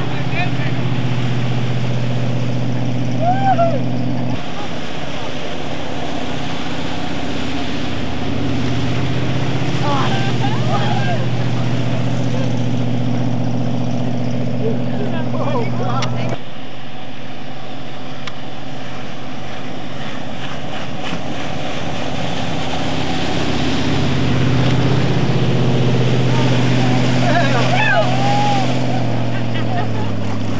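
Motorboat engine running steadily while towing a hydrofoil rider, with wind and water noise; the engine note shifts abruptly a couple of times.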